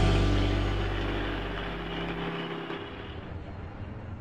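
A low, steady rumbling drone with a hiss over it, fading away steadily; its deepest part drops out a little past halfway.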